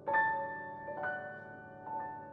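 Steinway Model B-211 grand piano played slowly: three notes or chords struck about a second apart, each left ringing and fading, the first the loudest.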